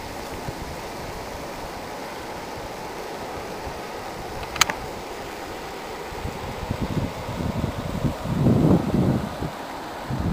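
Steady rush of water over a lake weir with wind in the open. A single sharp click about halfway through, then low rumbles of wind buffeting the microphone over the last few seconds.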